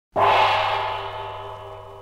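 A single gong stroke, struck once and ringing out as it slowly dies away, heard from a 1955 78 rpm record.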